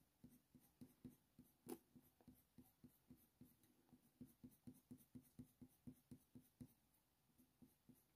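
Faint scratching of a black Polychromos colour pencil on hot-press watercolour paper, in short strokes: a few scattered strokes at first, then a steady run of about four a second through the middle.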